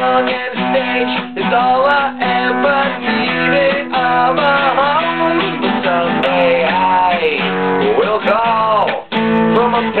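Acoustic guitar strummed steadily, with a man's voice carrying a wordless, gliding melody over it; the strumming breaks off for a moment about nine seconds in.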